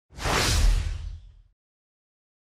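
A single whoosh transition sound effect with a deep rumble under it. It swells in just after the start and fades out over about a second and a half. It marks the cut to a section title card.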